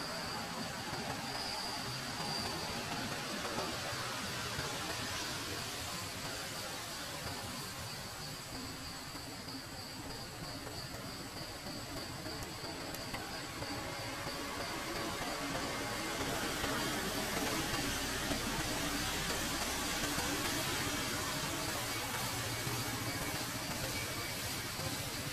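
Steady outdoor background noise, an even hiss with no single clear source. A faint thin high tone runs through the first few seconds and then fades.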